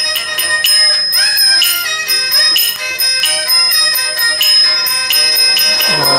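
Traditional shadow-play accompaniment: a small bell struck in a steady rhythm, ringing on over a gliding instrumental melody.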